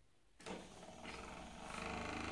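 Small DC motor with a round magnet on its shaft, starting up suddenly about half a second in after being given a spin by hand, then running with a steady whirring hum that grows louder as it picks up speed.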